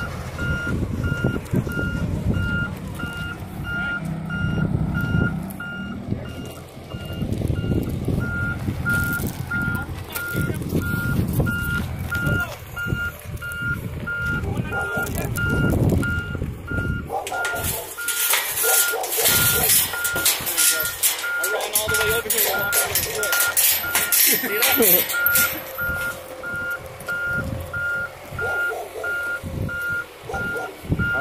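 A Volvo backhoe loader's backup alarm beeps steadily as the machine drives in reverse, over the low running of its diesel engine. From a little past the middle, a loud rushing, hissing noise covers it for several seconds, then dies away.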